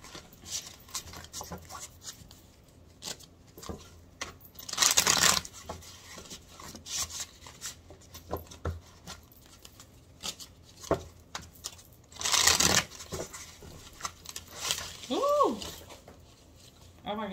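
A deck of tarot cards being shuffled by hand: a run of soft card clicks and slaps, with two longer riffling swishes about five seconds in and about twelve seconds in. A brief rising-and-falling vocal sound comes near the end.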